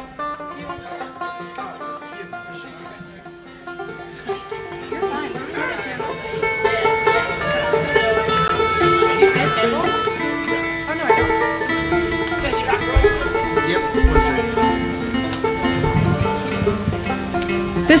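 Acoustic string band playing without vocals, with banjo, guitar and upright bass. The sound is thin and quieter for the first few seconds, then fuller and louder from about four seconds in.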